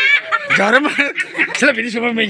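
People talking, with a chuckle among the voices.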